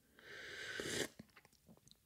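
A slurped sip from a coffee mug: a rising hiss lasting under a second, followed by a few faint clicks of swallowing.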